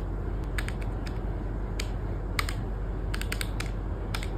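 Desk calculator keys being tapped with a pen tip: about a dozen light, irregular clicks as a sum is entered.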